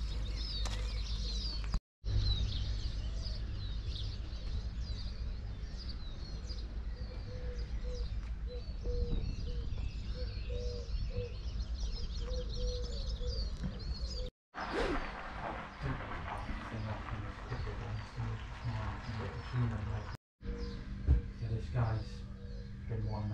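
Small birds chirping and singing over a steady low rumble. After a cut about two-thirds of the way through, the birdsong largely stops and scattered faint clicks and knocks take over.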